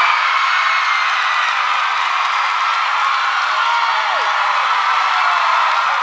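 Studio audience screaming and cheering with clapping, a loud, steady wall of crowd noise with single high shrieks rising above it, in reaction to being told they each get a $150 gift card.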